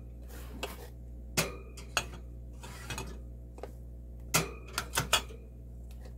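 Glass canning jars clinking and knocking as they are set onto metal wire shelving: a string of separate clinks, two of them ringing briefly, over a steady low hum.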